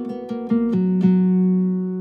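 Instrumental music on plucked acoustic guitar: a few notes picked in turn, with a low note left ringing through the second half.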